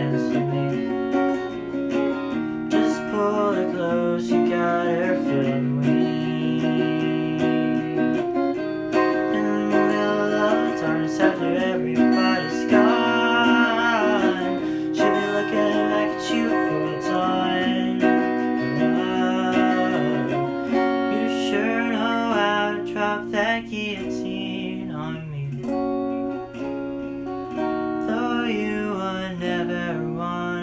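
Electric guitar, a Squier Affinity Stratocaster through a small Peavey Backstage amp, played with a clean tone: chords and picked notes running continuously as part of a song.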